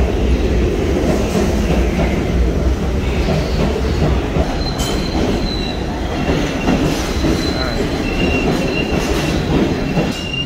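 New York City subway train moving through an underground station: a loud, steady rumble of wheels on rails. About five seconds in, a high, steady squeal joins it.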